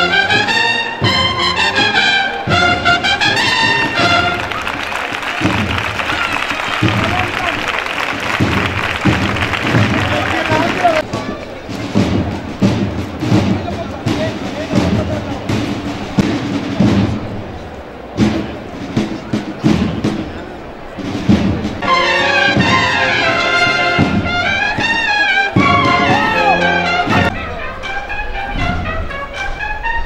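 Processional brass band with drums playing a march. A trumpet melody at the start gives way to a long stretch of mostly drumbeats and noise in the middle, and the brass melody returns about two-thirds of the way in.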